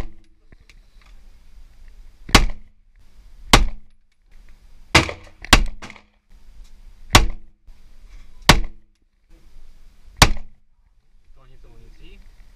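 A semi-automatic pistol fired seven single shots at an unhurried pace, each a sharp crack with a short echo off the indoor range's walls. Two of the shots come about half a second apart, about five seconds in.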